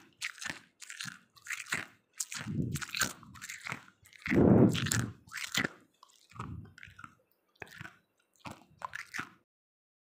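A person biting and chewing ice close to the microphone: a run of separate crunches, the loudest and heaviest about four and a half seconds in, stopping shortly before the end.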